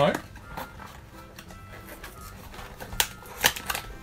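Cardboard cookie box being handled and opened, its flaps and the wrapped package inside giving scattered light clicks and rustles, with a cluster of sharper clicks near the end.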